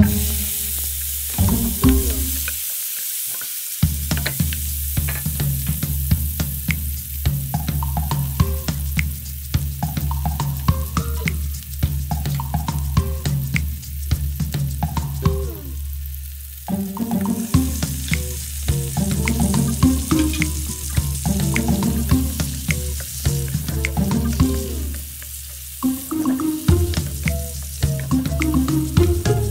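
Chopped garlic sizzling in hot oil in a frying pan, louder as chopped tomato is dropped in at the start, with scattered small clicks from the pieces and the stirring.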